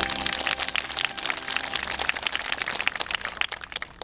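A small crowd applauding, the clapping gradually thinning out and dying down.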